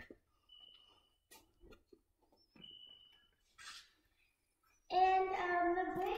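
A few faint clicks and soft scuffs, then about five seconds in a young girl starts singing in a high voice, holding and bending her notes without clear words.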